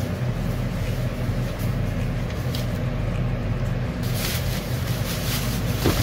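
A steady low hum with evenly spaced pitched layers, like a fan or appliance running in the room. From about four seconds in, crinkly rustling of a plastic hair-dye cape joins it as the wearer moves.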